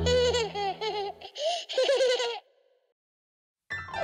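A cartoon character's high, childlike giggling over the last notes of a children's song, whose music stops about a second in; the giggling ends a little past halfway, followed by a moment of silence and the next song's music starting near the end.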